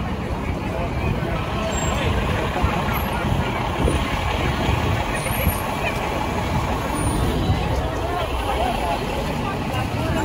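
Busy city street: steady traffic rumble with the chatter of a large crowd on foot.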